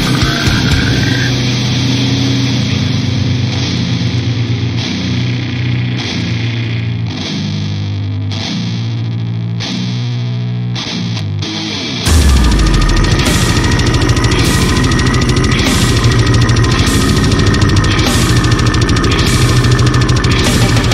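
Brutal slamming death metal: a heavily distorted, down-tuned guitar riff with drums. About twelve seconds in the full band comes in louder, with a deep bass hit and steady cymbal strikes about twice a second.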